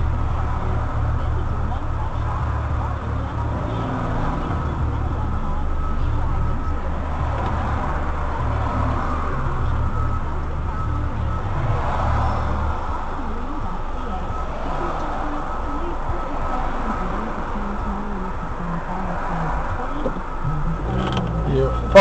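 Car engine idling, heard inside the cabin as a steady low rumble that eases a little about halfway through, with faint indistinct voice or radio sound above it.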